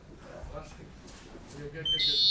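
Faint voices, then near the very end an electronic buzzer starts sounding, a loud steady high tone: the end-of-round signal in an MMA bout.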